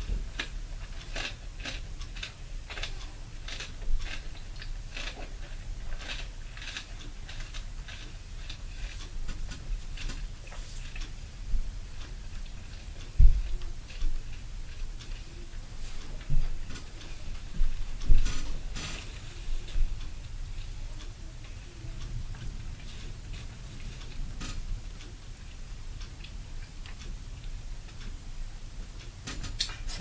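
Irregular light clicks and a few dull knocks over a steady low hum indoors, the heaviest knocks about 13 and 18 seconds in.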